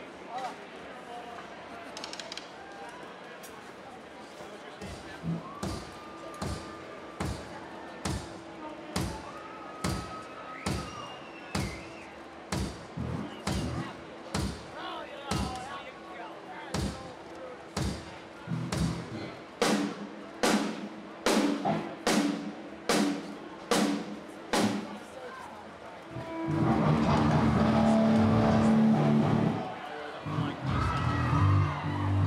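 A steady beat of sharp thumps, about one a second, that gradually comes faster and louder. For the last few seconds it gives way to loud, sustained music.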